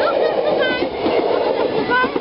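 Dutch NS passenger train passing close by: a loud, steady rumble of wheels and carriages running over the track.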